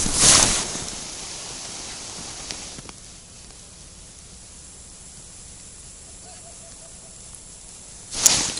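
Quiet outdoor background on a frozen river: a faint, steady hiss, with a short louder burst of noise at the very start and two small clicks about two and a half to three seconds in.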